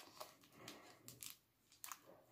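Near silence, with a few faint, short crinkles and clicks of a plastic-wrapped package being handled.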